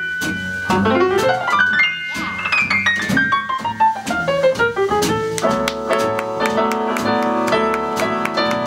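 Grand piano playing a jazz passage: a long run of notes falling from high to low in the middle, then quickly repeated chords near the end.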